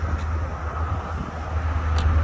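Rear liftgate of a 2017 Chevrolet Tahoe being opened, with a sharp click near the end, over a steady low rumble.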